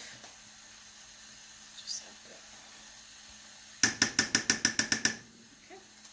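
A metal spoon clinking rapidly, about nine quick sharp taps in just over a second, as sugar is knocked off it into a pan of sauce. This comes about two thirds of the way in, after a few seconds of quiet.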